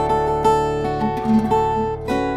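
Steel-string acoustic guitar in drop D tuning, fingerpicked: a D chord rings over a steady low bass while a few single notes are plucked over it, about two a second.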